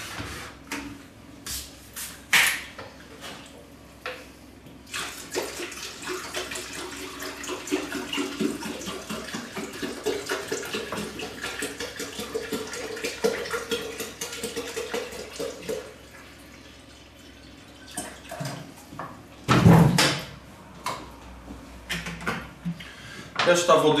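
Water pouring into a kettle for about ten seconds, its pitch rising as the kettle fills, with a few handling clicks before and a single loud knock near the end.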